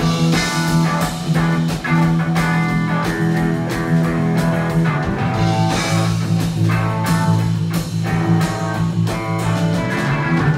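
Live rock band playing an instrumental passage without vocals: amplified electric guitar over a bass guitar line and a drum kit keeping a steady beat.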